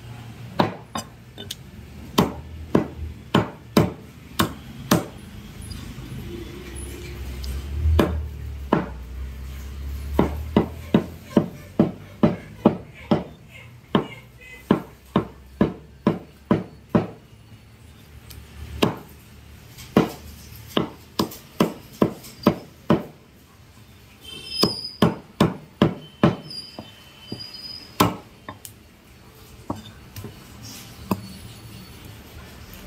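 A heavy broad-bladed cleaver chopping raw chicken into curry pieces on a wooden log chopping block. It gives a long series of sharp chops, about two a second, with a few short pauses.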